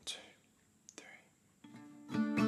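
Faint kitchen handling sounds: a metal screw lid twisted off a jar and set down on a stone countertop, a few light clicks and scrapes.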